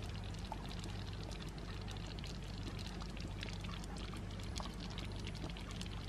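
Thick soup simmering in a pot on low heat, with many small, irregular bubbling pops over a steady low hum.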